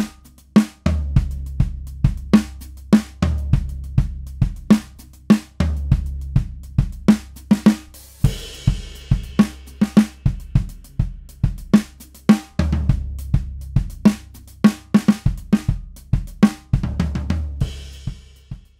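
A drum kit played in a steady groove of kick drum, snare and cymbals, with a cymbal crash about eight seconds in. The snare's batter head is muffled with small cut pieces of Evans EQ Pods.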